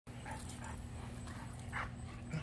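Goldendoodles playing, making a few short vocal sounds, the strongest just before the end, over a steady low rumble.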